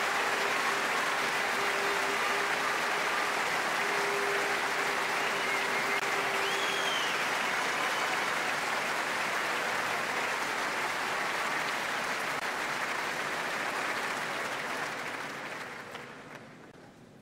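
A large concert-hall audience applauding steadily, fading out near the end.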